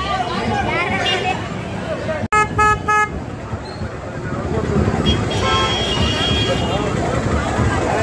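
Crowd chatter and babble, cut by two short horn toots in quick succession about two and a half seconds in; a fainter high tone sounds through the chatter around six seconds in.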